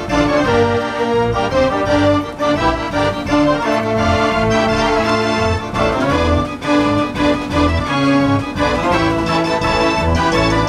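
Decap dance organ playing a tune, its organ pipes and accordions sounding together over a steady bass beat.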